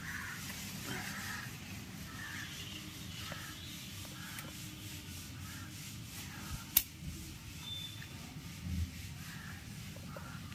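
Brinjal leaves and stems rustling and rubbing as fruits are picked by hand into a wicker basket. There is a single sharp click about seven seconds in and a dull thump near nine seconds.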